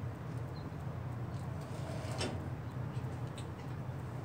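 Faint sliding and light metal rattling of a drawer-slide bracket carrying a welding torch as it is moved along, over a steady low hum.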